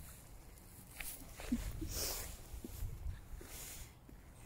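Walking on an asphalt path: scattered scuffs and rustles of footsteps and leash over a low rumble.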